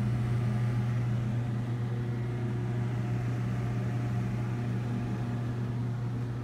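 Steady low mechanical hum that holds one pitch and level, with no other events.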